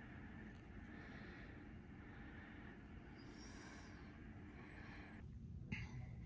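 Near silence: faint steady room tone with a low hum, which changes briefly about five seconds in.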